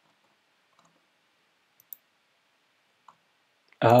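A few faint, isolated clicks about a second apart from someone working at a computer; just before the end a man says "oh".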